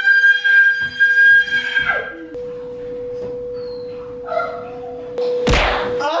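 A person's high, drawn-out scream, held for about two seconds, then a sudden heavy thunk near the end, with a faint steady droning tone underneath.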